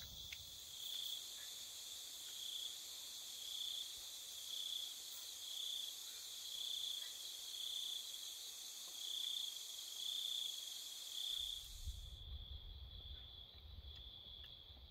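Night insects calling in forest: a steady high-pitched chorus with a cricket-like chirp pulsing about once a second. Near the end the highest part of the chorus cuts out suddenly and a low rumble comes in.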